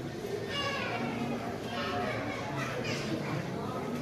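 Indistinct chatter of gallery visitors, with a child's high voice rising above it three times.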